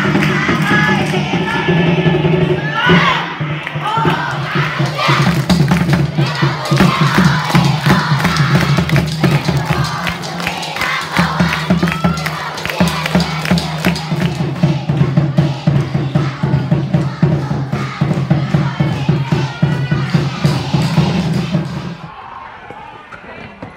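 A group of children chanting and shouting a team cheer over music, with hand-clapping.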